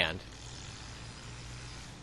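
Faint steady low hum and hiss of room tone, with no clicks or knocks, after the last word of a man's narration at the very start.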